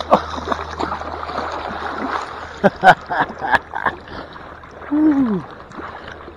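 A brown trout thrashing in a landing net at the water's surface, a run of sharp splashes in the middle, over running river water.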